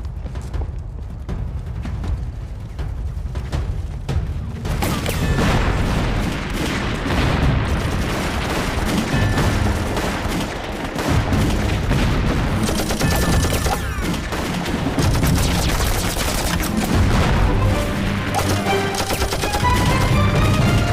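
Film battle sound effects: rifle and machine-gun fire with explosions. It starts light and sparse, then becomes dense and continuous about five seconds in.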